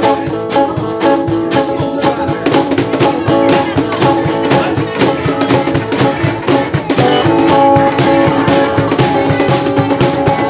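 Live acoustic-electric band playing an instrumental opening: strummed acoustic guitar, electric guitar and electric bass over a steady beat from two cajons, with a harmonica.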